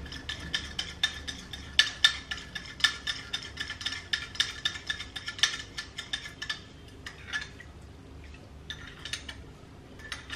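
A metal spoon stirring a thick, sugary paste in a small glass bowl, with a quick run of scraping ticks against the glass. The ticks thin out to a few scattered strokes after about seven seconds.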